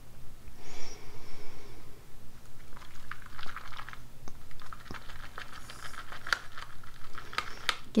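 A paintbrush whisked in a small plastic cup of soapy watercolour, frothing it into bubbles. It makes quick, irregular clicks and taps of the brush against the cup, which come thicker in the second half.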